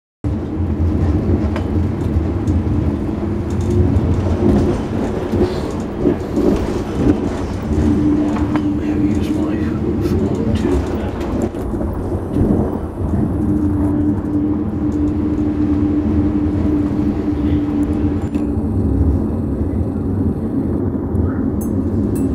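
Running noise inside a moving passenger train carriage: a steady low rumble of the train on the rails, with a steady hum that comes in twice and scattered small clicks and knocks.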